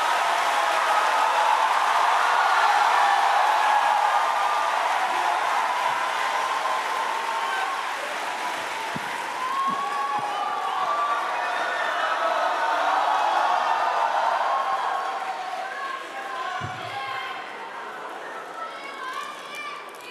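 A large theatre audience applauding and cheering, with shouts from the crowd mixed in; the applause dies down over the last few seconds.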